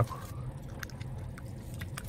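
Faint wet mouth noises after eating: a few soft clicks and smacks of the lips and tongue, over the low steady hum inside a car.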